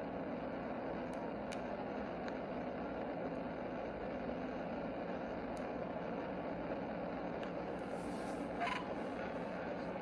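Steady road and wind noise inside a police car driving at high speed on a highway, with a brief higher-pitched sound about eight and a half seconds in.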